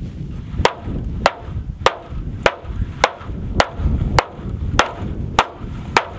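Hammer repeatedly striking a clear Tuftex corrugated polycarbonate panel in a hail-resistance test: about ten sharp, evenly spaced hits, a little more than one a second and a half apart each, without the panel breaking.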